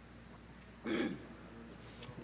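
A person clearing their throat once, a short burst about a second in, over a faint steady low hum.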